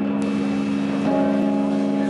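A live post-rock band holds a sustained, ringing chord drone, which changes to a new chord about a second in.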